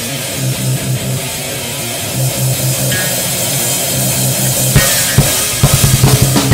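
Brutal death metal band playing: distorted guitars and bass over drums with cymbal wash, in a slower stretch of held low riffing. A couple of hard drum hits come about five seconds in, and fast, dense drumming starts again near the end.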